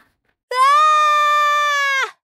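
A child's voice holding one long, loud holler, starting suddenly about half a second in, rising briefly and then held on a steady pitch for about a second and a half before sagging slightly as it stops.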